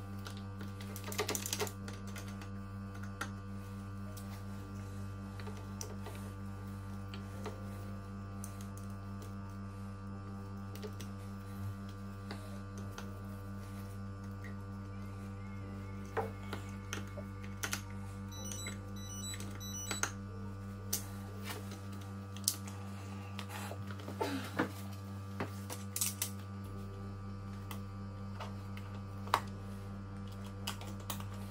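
Small scattered clicks and taps from a screwdriver and wires being worked at a wall light-switch box, more frequent in the second half, over a steady low hum.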